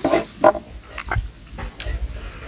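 Close mouth sounds of a man eating with his fingers: wet chewing and lip smacks in short bursts, the two loudest in the first half second, then a few softer ones.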